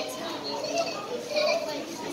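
Children's voices and indistinct chatter in the background, with no clear animal sound.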